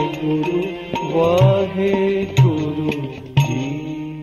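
Sikh Gurbani shabad kirtan music: sustained harmonium chords under a gliding melody, with deep tabla strokes about once a second, beginning to fade near the end.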